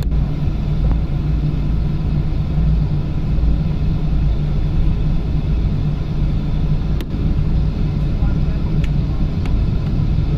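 Cabin noise inside a twin-engine Boeing 777 on the ground before takeoff: a steady low rumble of the engines and airframe with a constant hum. A sharp click about seven seconds in and two faint ticks near the end.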